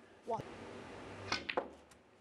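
Two quick, sharp clicks of snooker equipment at the table, after a brief snatch of a voice.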